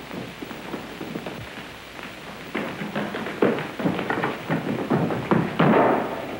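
A scuffle and chase on an old film soundtrack: quiet at first, then from about two and a half seconds in, a quick run of thumps and knocks, like hurried footsteps and struggling, with film music under it.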